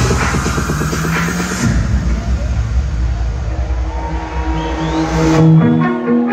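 Electronic dance music played loud over a nightclub sound system. A pounding kick-drum beat drops out about a second and a half in, leaving sustained synth chords that build again near the end.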